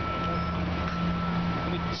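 A large vehicle's engine running steadily, a low hum over street noise, with a thin steady high tone under it.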